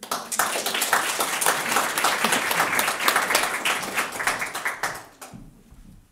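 Small audience applauding, the clapping starting at once and dying away about five seconds in.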